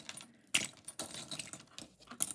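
Metal pins, brooches and pinback buttons clinking and scraping against each other as a hand sifts through a loose pile, a handful of sharp clinks, the loudest about half a second in.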